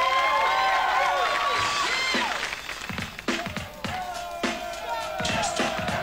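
Studio audience cheering and screaming for the act just announced. About three seconds in a hip-hop beat starts, with regular kick-drum hits and a long held high tone.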